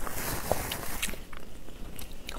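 A person biting into food and chewing near a clip-on microphone, with a few sharp crackles about half a second and a second in.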